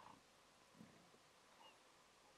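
Near silence, with a few faint short sounds: a low one just under a second in and a brief high chirp later on.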